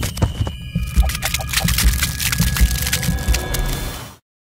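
Animated-logo outro sound effects: a fast run of clicks and ticks over repeated low thumps and a few held tones. It cuts off suddenly at the end.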